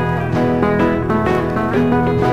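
A 1950s country record playing, with guitar to the fore.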